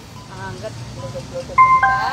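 Portable Bluetooth speaker's electronic signal tones: a few short low blips, then a clear two-note falling chime near the end, the sound of the speaker switched to Bluetooth mode and pairing.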